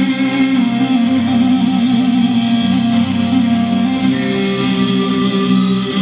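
Live band playing an instrumental passage, led by acoustic and electric guitars over a sustained, steady backing.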